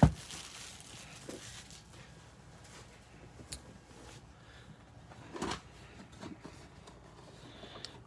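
Faint rustling of a stack of glossy trading cards handled by hand, cards slid one at a time from front to back, with a few brief soft flicks, the clearest about three and a half and five and a half seconds in.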